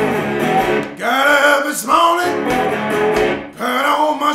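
Blues slide guitar playing an instrumental passage, with notes that glide up and down in pitch.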